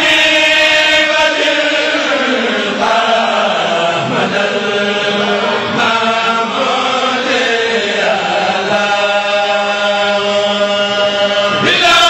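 Male group chanting a sindidi, a Mouride religious chant, in unison over microphones, in long held phrases.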